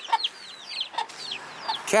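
Baby chicks peeping, a run of short high peeps that slide down in pitch, about three or four a second, with the mother hen giving a few short low clucks among them.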